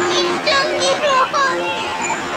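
Children's voices calling and chattering over a steady crowd din.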